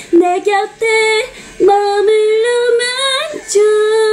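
A woman singing: a few quick short notes, then long held notes of a second or more, with a brief pause between phrases.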